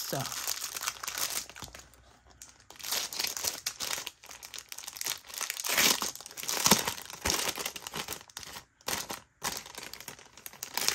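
Clear plastic packaging crinkling as hands handle a cellophane-wrapped pack of envelopes, in irregular bursts with brief pauses.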